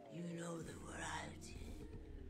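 Quiet whispering voice layered over sound-design tones that slide up and down in pitch, with a low hum setting in under a second in.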